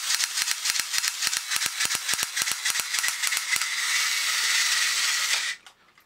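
Small electric motor and gear train of a 1960s Japanese battery-operated tin toy robot running with a steady whirr, freshly oiled at both ends of the motor shaft and running much better. Rapid clicking from the mechanism runs through the first few seconds, and the motor cuts off suddenly near the end.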